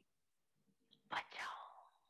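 Near silence, then about a second in a short breath from the voice-over speaker.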